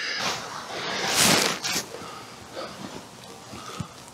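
A man's heavy breathing and rustling as he works a wooden fence post into the ground; the loudest is a breathy exhale about a second in, lasting about half a second, and there is a small knock near the end.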